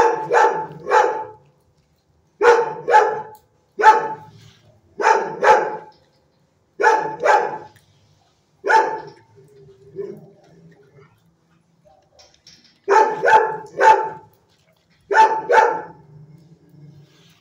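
Dog barking repeatedly in groups of two or three sharp barks a couple of seconds apart, with a quieter gap of a few seconds just past the middle.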